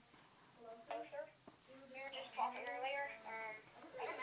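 Faint, indistinct speech from about a second in.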